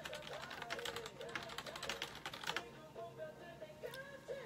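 Rapid keyboard typing, a dense run of clicks lasting about two and a half seconds, over quiet background music.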